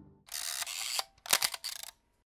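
Camera shutter-and-wind sound effect: two short bursts of mechanical clicking and whirring about a second apart, the first ending in a sharp click.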